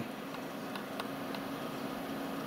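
Steady low hum with a faint hiss, broken by three faint clicks as the frequency of a handheld antenna analyser is stepped up by hand.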